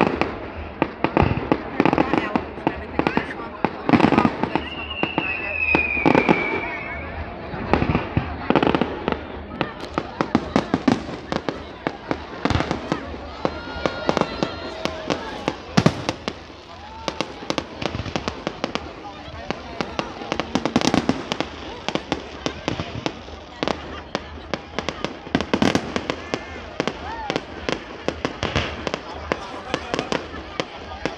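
Aerial fireworks going off: a running series of sharp bangs and crackling bursts, denser in patches, with a falling whistle about five seconds in.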